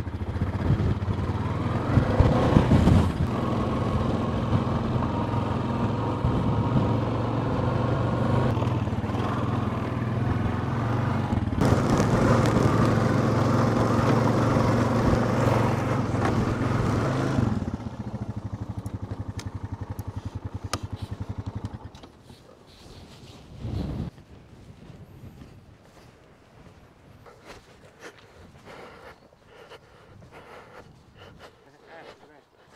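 Honda quad bike's engine running steadily as it is ridden over rough ground. It drops back about two-thirds of the way through and dies away a few seconds later. A short thump follows near the end.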